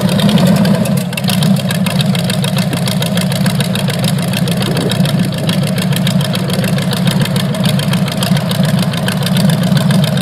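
Big-block V8 engine of a Hossfly bar stool idling steadily with a dense, even firing beat.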